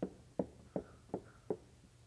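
Marker tip tapping on a whiteboard five times in an even rhythm, about two and a half taps a second, dotting a row of points onto a graph.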